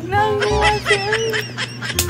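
A voice drawing out long, wavering notes, like singing, with a steady hum underneath.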